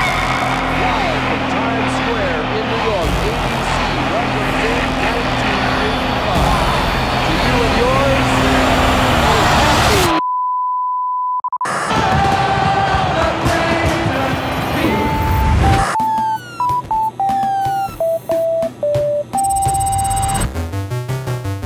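Crowd shouting and cheering over music in a television broadcast for about ten seconds, then a sudden cut to a steady single-pitch test tone lasting about a second and a half. After a brief jumble of broadcast sound, a run of electronic beeps steps up and down in pitch near the end.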